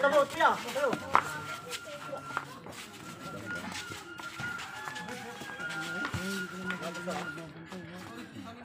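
Basketball players shouting and calling to each other during play, loudest in the first second or so. Quieter voices follow, with faint music playing underneath.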